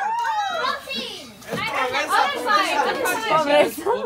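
Indistinct chatter of several people talking over one another, with a brief lull about a second and a half in.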